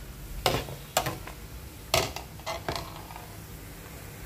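Metal ladle clinking against the rim and side of a steel stockpot of boiling soup while foam is skimmed off: about six sharp clinks, the loudest near half a second and two seconds in.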